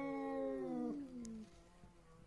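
A cat's long, drawn-out yowl (caterwaul), sliding down in pitch and dying away about a second and a half in. It is a warning yowl between two cats squaring off nose to nose.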